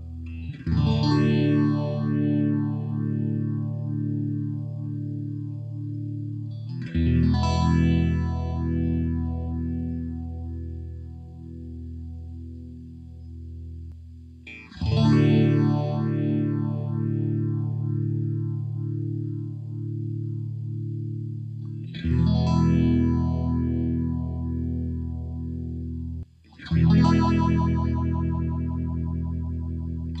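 Electric guitar chords played through a Pfeiffer Electronics Phaser pedal (an MXR Phase 90-style phaser). Each chord is struck and left to ring, with the phaser sweep pulsing steadily through the sustain. Five chords sound about every seven seconds, the last two closer together.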